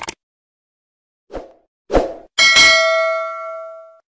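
End-screen sound effects: a few short hits as the subscribe-prompt buttons pop up, then a bell-like chime about two and a half seconds in that rings out and fades.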